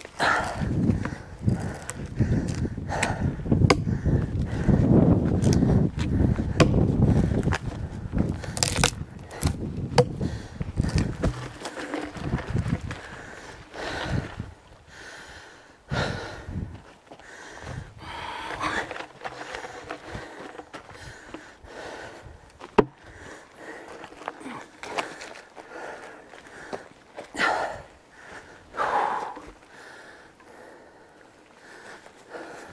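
A heavy, wet log being levered with a pulp hook and rolled over dirt and gravel, with a rough rumbling and scraping for the first ten seconds or so. After that there are footsteps on gravel and a few sharp knocks.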